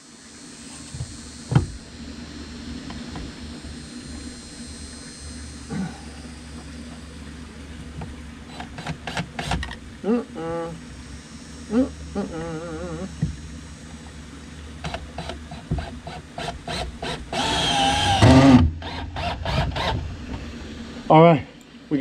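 Cordless drill with a star (Torx) bit driving a screw into a wooden board: scattered clicks and short bursts of the motor, then one longer, louder run about three-quarters of the way through as the screw goes home.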